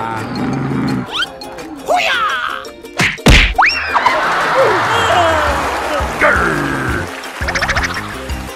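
Background music overlaid with comic sound effects: quick gliding whistle-like sweeps rising and falling in pitch, and one sharp hit about three seconds in.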